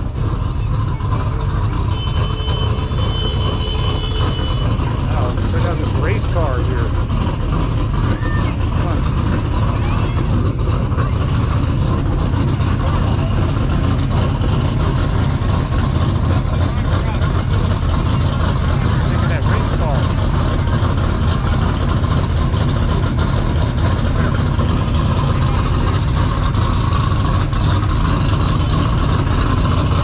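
Steady low rumble with indistinct voices in the background.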